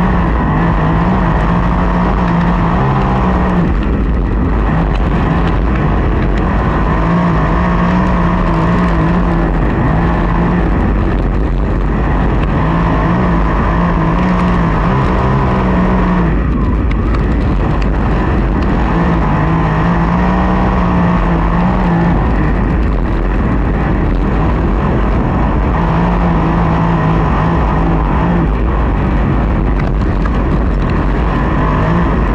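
USAC sprint car's V8 engine heard from on board while lapping a dirt oval. The engine note swells and fades about every six seconds as the driver gets on and off the throttle through the straights and corners, over constant wind and track noise.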